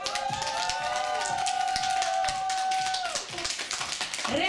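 Audience applause: a room of people clapping. A long held pitched note, cheer-like, sounds over it for about three seconds from the start.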